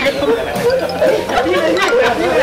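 Several people talking over one another: lively group chatter.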